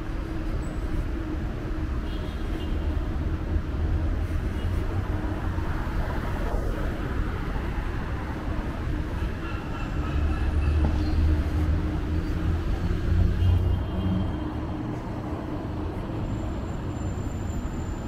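Steady low rumble of city street traffic, swelling louder for a few seconds in the middle.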